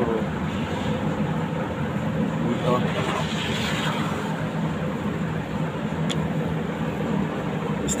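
Steady mechanical hum of running machinery, even and unchanging, with a single short click about six seconds in.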